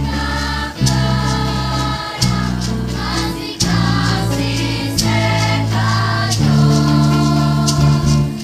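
Children's choir singing a Christmas song with a live band: held low accompanying notes that change about once a second, with sharp percussion hits keeping the beat.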